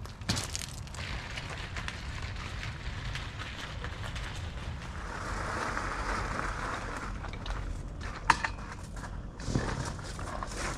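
Garden cart wheels rolling over loose gravel, with footsteps crunching alongside, as a steady crunching noise. A single sharp knock comes about eight seconds in.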